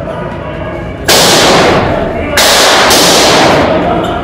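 Gunfire recorded on the shootout footage, loud and distorted. It comes in two runs of about a second each, starting about a second in, with the shots blurred together.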